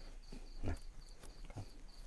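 Crickets chirping steadily at night: a high-pitched pulsed chirp repeating about four times a second.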